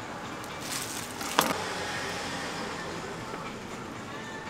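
Steady background hum of a street food stall, with one sharp click of a kitchen utensil about a second and a half in.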